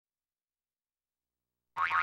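Silence, then near the end a cartoon 'boing' sound effect starts abruptly, its pitch wobbling up and down, accompanying an animated title.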